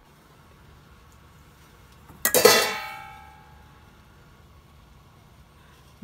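A metal cooking vessel knocked or set down with a sharp clang a little over two seconds in, ringing out and fading over about a second.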